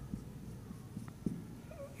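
Faint strokes and taps of a marker drawing on a whiteboard, with a brief squeak near the end.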